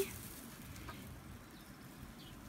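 Faint, steady low background rustle with a single soft tick about a second in, right after the end of a spoken word.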